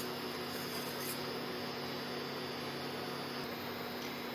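Steady electrical hum with a low, even hiss from the electric hob as a pan of oil heats on it.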